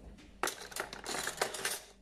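Metal cutlery clinking and rattling in a plastic drawer tray: a quick run of sharp clinks starting about half a second in and stopping just before the end.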